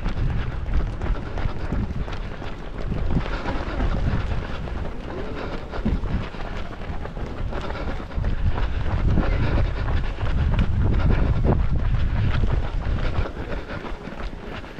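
Wind buffeting the microphone of a camera carried by a running person: a heavy low rumble that swells and eases, loudest in the second half, with faint footfalls on asphalt beneath it.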